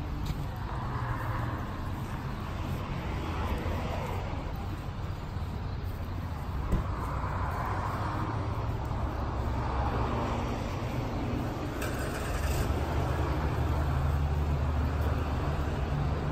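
Steady low rumble of road traffic, with several slow swells as vehicles pass. The rumble grows louder in the last few seconds, and a single sharp click comes about seven seconds in.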